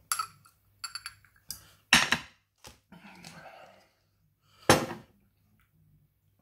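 Glass bottle and shot glass clinking and knocking as a shot is poured and handled: a string of sharp knocks, the loudest about two seconds in and another near the end.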